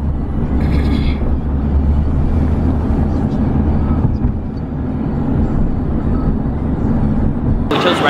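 Steady low rumble of street traffic and city background noise; a man starts speaking near the end.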